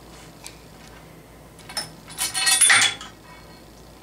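A bolt falling into the oil sump of a South Bend shaper: a loud, ringing metallic clatter lasting under a second, about two seconds in. It comes after a few light metal clicks from hands working the pipe's mounting nuts.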